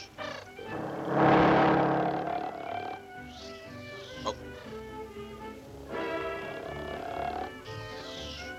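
Cartoon snoring: one long, loud snore about a second in and a fainter one near the end, over orchestral background music.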